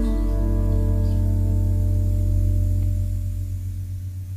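A live soul-jazz band's closing chord ringing out. A deep bass note is held under fading higher notes, and all of it dies away near the end.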